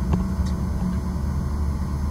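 Car driving slowly, heard inside the cabin: a steady low engine and road rumble, with a faint click or two near the start.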